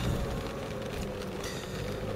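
Steady low rumble and hiss of a vehicle's cabin noise while driving.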